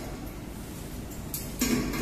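Faint guitar music, a plucked note held steady near the end.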